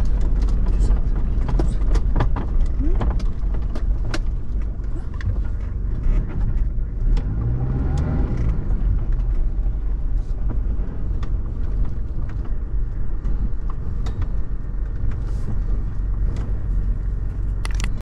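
Toyota VX 4x4 driving over a rough sandy desert track, heard from inside the cabin: a steady low engine and road rumble with frequent sharp clicks and rattles, and the engine note briefly rising and falling near the middle.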